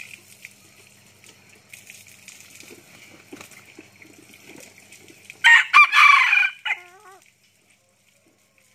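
An F2 red junglefowl rooster crowing once about five and a half seconds in: a short, loud crow that ends abruptly with a brief falling tail. Before it, a faint steady high hiss and a few soft clicks.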